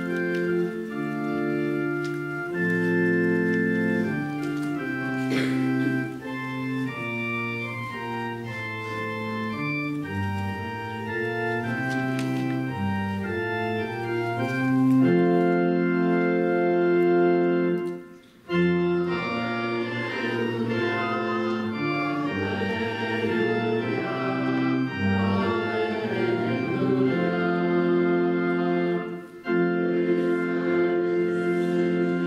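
Church organ playing slow, held chords for the psalm, with short breaks about 18 seconds in and again just before the end.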